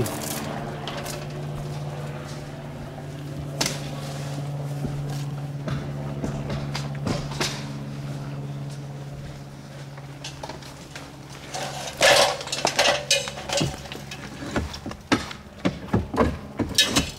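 Steady low machine hum with scattered knocks and scrapes, then a burst of clattering about twelve seconds in and more near the end: roofers tearing off old shingles.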